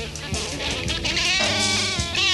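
Progressive rock band playing live, recorded straight from the mixing desk: drum kit with a lead line that bends and wavers in pitch. The bass guitar is missing from the mix because it was amplified separately.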